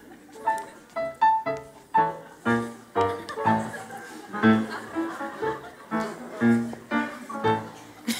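Upright piano playing a light accompaniment of notes and chords, struck about twice a second, each ringing and fading.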